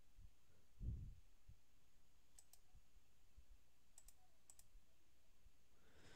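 Near silence with a few faint computer mouse clicks: two close together about two and a half seconds in, then two more around four and four and a half seconds. A soft low thump comes about a second in.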